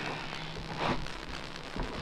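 Soft rustling and shuffling of people moving and handling a towel, with a slightly louder brush of cloth a little under a second in.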